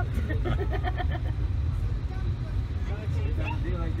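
Steady low rumble of a passenger train rolling along the track, heard from inside the dome car, under people talking.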